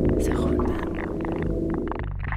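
Live experimental electronic music: a dense, steady low drone of stacked tones, overlaid with short scattered clicks and wordless, voice-like processed sounds.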